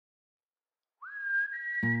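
Intro music: after a second of silence, a whistled melody begins with a quick upward slide and climbs in steps. Near the end, a backing of guitar chords comes in under it.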